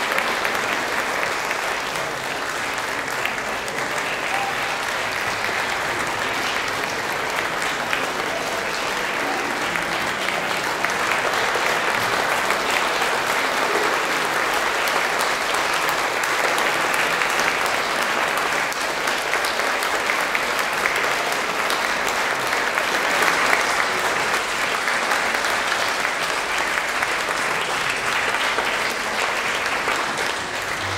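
An audience applauding, a dense, steady clatter of many hands clapping that holds at an even level.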